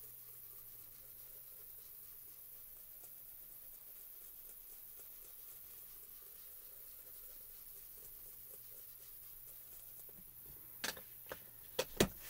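Faint, soft rubbing and dabbing of a foam ink blending tool over smooth Bristol paper as Distress Oxide ink is blended on. A few sharp knocks near the end.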